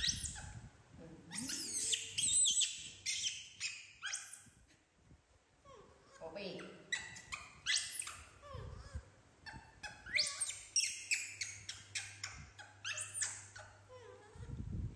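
Pets squealing and whining, in clusters of short, sharp, high-pitched squeaks with a brief lull about halfway, as they beg for food.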